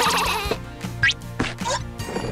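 Cartoon background music with playful sound effects: a short trembling, wobbly high note at the start, then quick rising whistle-like glides about a second in and again near the end, as a character jumps onto a toy train.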